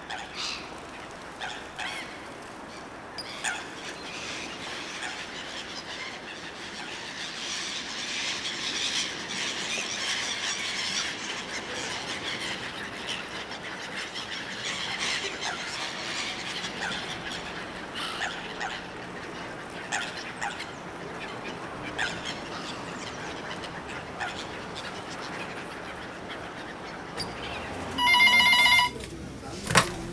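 Gulls calling repeatedly over a steady background hiss. Near the end a telephone rings loudly for about a second.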